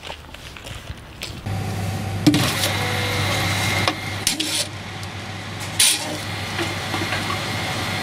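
Faint footsteps on gravel, then a reverse vending machine running with a steady hum, with a few clunks as it takes in and moves a plastic bottle.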